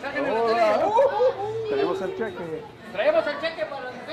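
Chatter of several people talking at once, voices overlapping, with a brief lull before it picks up again about three seconds in.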